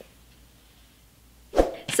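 Low room tone for about a second and a half, then a woman's short, sharp breath just before she starts speaking.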